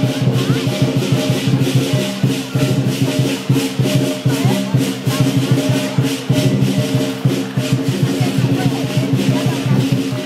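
Lion dance percussion: drum and cymbals playing a fast, unbroken beat, with ringing metal tones underneath.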